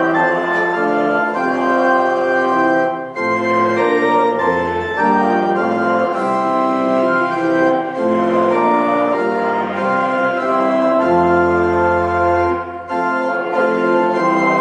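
Church organ playing slow, sustained chords over deep pedal bass notes, with brief breaks between phrases about three seconds in and near the end.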